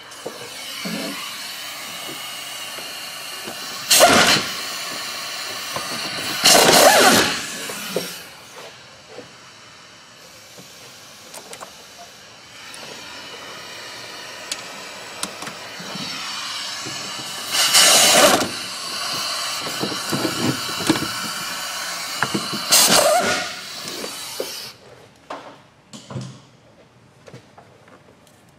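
Cordless impact wrench run in four short bursts, each under a second, loosening fasteners. A steady hiss runs underneath.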